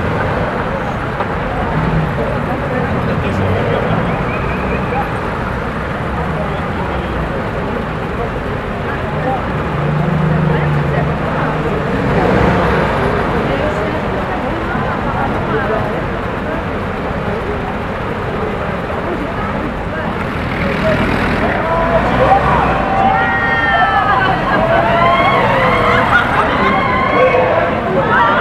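Military vehicle engines running at low speed in a street parade, over steady crowd chatter. The voices grow louder near the end.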